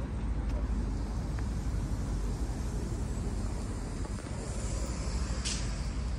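City street ambience: a steady low rumble of traffic, with a brief sharp hiss about five and a half seconds in.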